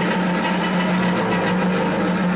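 Free-form noise music from a band on amplified homemade instruments, including a homemade stringed instrument: a dense, unbroken racket over a steady low drone.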